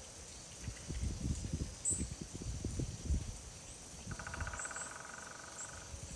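Outdoor woodland ambience: a few short, high bird chirps over a steady high insect hum. A buzzy, rattling trill runs for under two seconds from about four seconds in, and irregular low gusts of wind rumble underneath.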